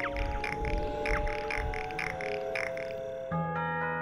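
Ambient music of held tones under a quick series of short downward-sweeping chirps, about four a second: bat echolocation calls made audible in a documentary soundtrack. Near the end the chirps stop and the music moves to a new low chord.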